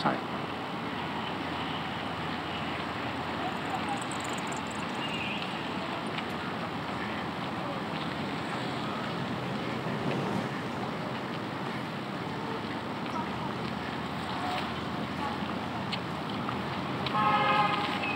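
Steady ride noise from a bicycle on a park path: wind and tyre rumble with the bike's own mechanical rattle, and faint voices of passers-by. Near the end a bicycle bell rings in a quick trill.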